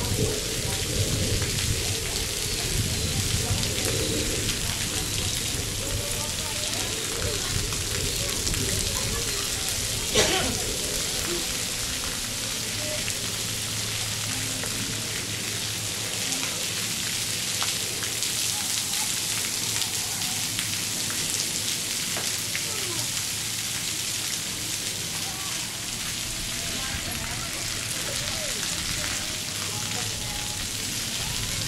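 Splash pad ground fountains spraying water and pattering onto wet pavement, a steady hiss, with one short knock about ten seconds in.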